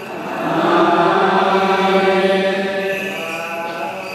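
A group of voices in Orthodox Tewahedo liturgical chant, holding a long note that swells about half a second in and fades toward the end.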